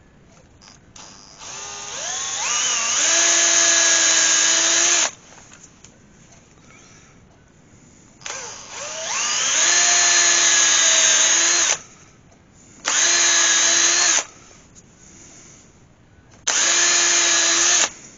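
Electric hand drill with a small bit boring eye holes into a turned yew workpiece: four separate runs of its motor whine. The first two wind up in pitch over about a second and run for a few seconds each, and the last two are short.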